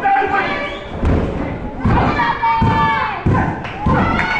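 Wrestlers' bodies hitting the ring mat: several heavy thuds in quick succession from about a second in.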